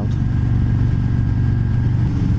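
Harley-Davidson Road King Special's Milwaukee-Eight V-twin running steadily while the motorcycle cruises, a constant low hum.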